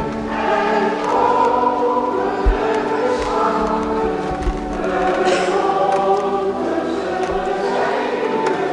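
Choir of voices singing a hymn over sustained pipe organ chords, in a reverberant church. A low bump about two and a half seconds in.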